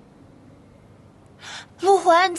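Quiet room tone, then a quick intake of breath about a second and a half in. A young woman then starts speaking loudly into a phone just before the end.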